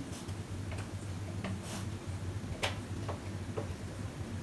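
Chalk on a chalkboard, with a set square held against the board: a handful of short, irregularly spaced ticks and scratches as hatching lines are drawn. The sharpest tick comes about two and a half seconds in.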